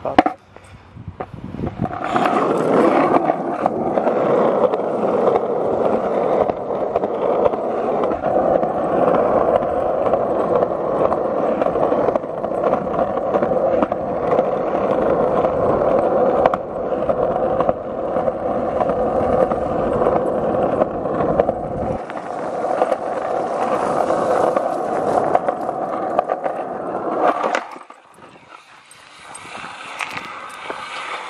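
Wheels rolling steadily and fast over rough, cracked pavement, a continuous gritty rolling noise that falls away sharply near the end as the ride slows.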